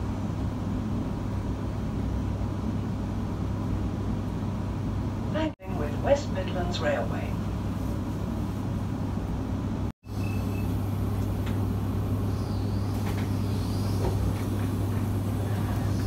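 Steady low hum and rumble of a passenger train carriage's interior while the train runs, with brief voices about six seconds in. The sound drops out for an instant twice.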